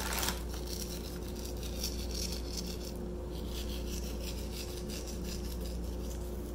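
Morton's flake salt crumbled between fingertips and sprinkled onto soft baguette dough: a faint, fine rubbing rasp.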